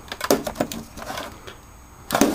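A few light clicks and taps from a small plastic box being handled, bunched in the first second, then only a faint background.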